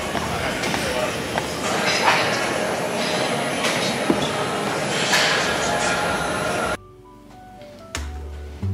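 Matrix stair climber running, its moving steps giving a steady mechanical rumble with occasional knocks, under gym noise. About seven seconds in this cuts off suddenly to quiet background music.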